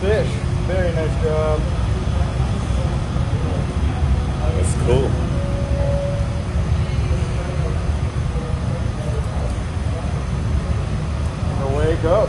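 Steady low rumble of a glassblowing studio's furnace burners and exhaust fans, running on without change.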